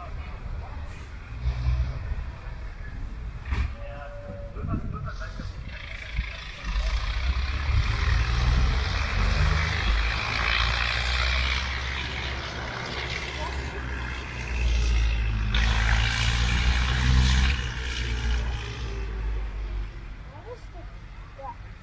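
Outdoor wind noise: a low rumble on the microphone with a broad hiss that swells twice, and indistinct voices in the background.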